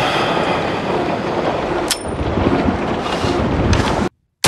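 A loud, steady rushing noise with a single sharp click about two seconds in.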